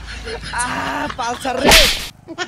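A single sharp slap to the face, a short loud smack near the end, after a few vocal sounds.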